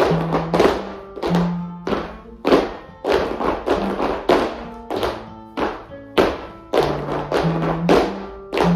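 Flamenco music for a soleá: strummed guitar chords struck sharply about every half second to second, each ringing on over low bass notes, with dancers' heeled flamenco shoes tapping a wooden floor.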